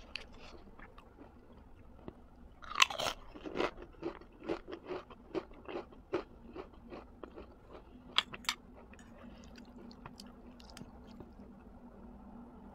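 A person chewing food close to the microphone: a loud bite a little under three seconds in, then a run of chews about three a second for several seconds, and two sharp clicks about eight seconds in.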